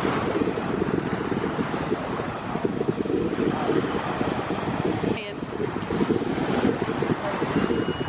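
Wind buffeting the microphone: a steady, fluttering rush that is heaviest in the low end and drops out briefly about five seconds in.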